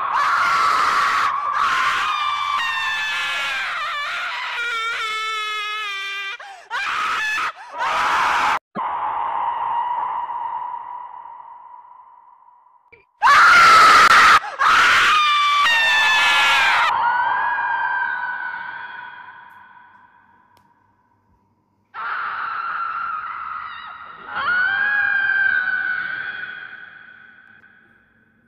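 Repeated long, high-pitched screams in several bouts, some quavering, each trailing off slowly; the screaming stops for a couple of seconds a little past the middle.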